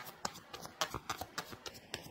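Tarot cards being handled to draw a card: a quick, irregular run of light card clicks and flicks.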